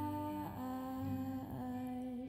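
A solo voice singing long held notes of a rock song cover, moving to a new pitch about half a second in and again about a second and a half in.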